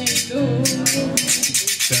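Live acoustic music: an acoustic guitar strummed in a quick, even rhythm, with voices singing along.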